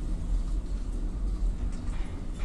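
ZREMB passenger lift travelling in its shaft, heard from inside the car: a steady low rumble.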